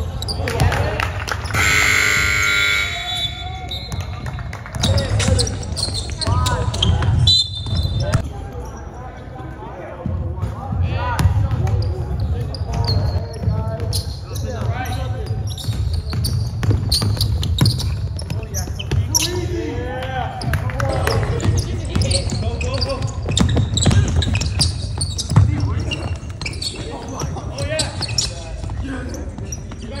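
Basketball game on an indoor court: the ball bouncing on the floor several times, with shoes on the court and indistinct voices of players and spectators.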